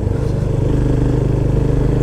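Motorcycle engine running steadily under way, heard from the rider's position, with an even, unchanging pitch.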